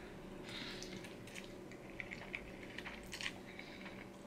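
A person chewing a mouthful of noodles, faint, with a few small wet clicks and smacks.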